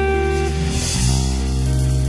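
Instrumental rock music: a long held lead guitar note over bass and drums, with more sustained guitar notes following.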